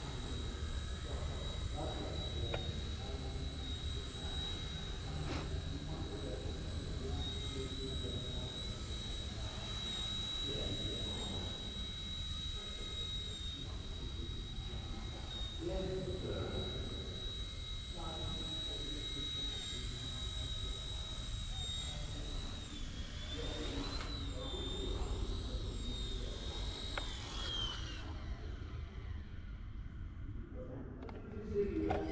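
Eachine E129 micro RC helicopter flying, its motor and rotor making a steady high-pitched whine. The whine wavers up and down in pitch a few seconds before the end, then falls in pitch and stops as the helicopter winds down.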